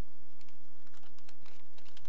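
Papers being handled at a lectern, picked up by its microphone: a string of small irregular clicks and rustles over a steady electrical hum.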